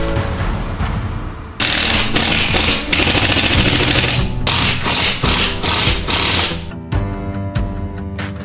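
Background music, with a power screwdriver running over it in several bursts from about one and a half to six and a half seconds in, driving drywall screws.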